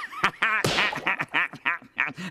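A cartoon character laughing in quick repeated bursts, with a breathy gasp partway through.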